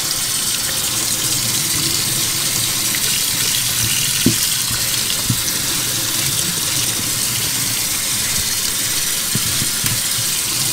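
Kitchen faucet running steadily into a stainless steel sink, the water splashing over a piece being scrubbed under it. Two brief knocks, about four and five seconds in.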